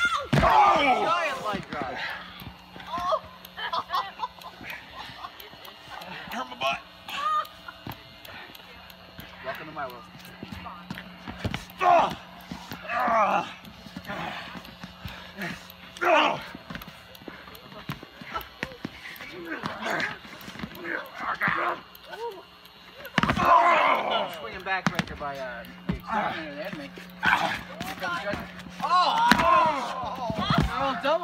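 Men's voices shouting and crying out in bursts, loudest near the start, around the middle and near the end, with scattered thuds, over a steady low hum.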